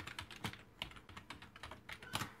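Computer keyboard being typed on: a rapid, uneven run of key clicks as a word is entered.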